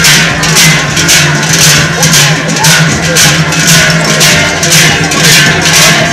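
Large cowbells strapped to the backs of costumed dancers, clanging together in a steady rhythm of about two strokes a second as the dancers step.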